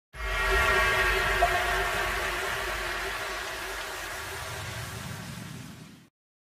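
Intro music sting: a single held, chord-like tone over a low rumble. It starts suddenly, fades slowly over about six seconds, then stops.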